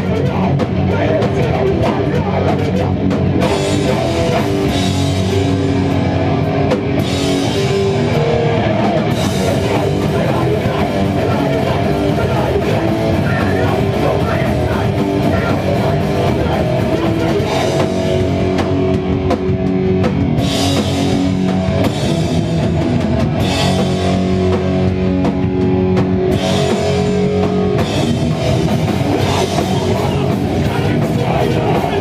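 Hardcore punk band playing live and loud, heard from the room: distorted electric guitars and bass over a pounding drum kit, with cymbal crashes recurring through the song.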